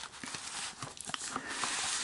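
Cardboard LaserDisc jacket and paper inner sleeve being handled as a disc is slid out: soft rustling with a few light taps, turning into a sliding hiss near the end.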